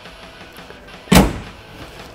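The all-steel suicide door of a custom 1929 Ford pickup being pushed shut, closing with one thud about a second in.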